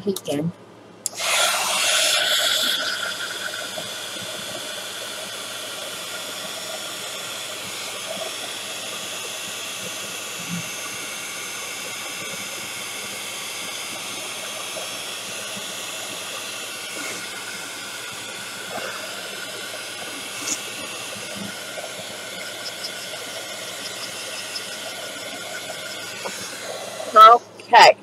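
A handheld electric heat tool blowing steadily to dry wet watercolor paint on a card: a hiss with a steady whine. It switches on about a second in, is loudest for the first second or so, and cuts off about a second before the end.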